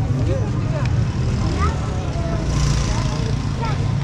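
Busy market street ambience: a steady low rumble of traffic under scattered chatter of passers-by.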